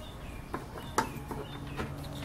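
A few light clicks and taps of small objects being handled on a wooden workbench, over a faint steady low hum.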